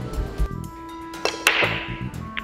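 Background music with steady tones, broken by a sharp hit about one and a half seconds in that trails off into a falling swish, like a transition effect in the music.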